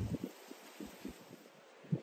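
Quiet outdoor background with faint rustling of foliage, loudest in the first half second and then dropping to a low hush.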